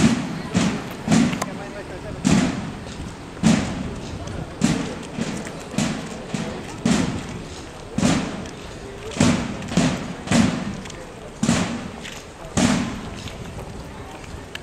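Parade band's bass drum and cymbals beating a march rhythm, a strong stroke about every second with quicker strokes in between, over people's voices.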